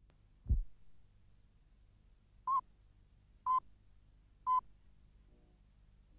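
A low thump, then three short electronic beeps of the same pitch, evenly spaced one second apart, over a faint low hum.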